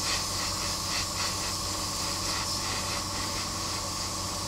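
Airbrush spraying paint in a steady hiss, with a steady low hum underneath.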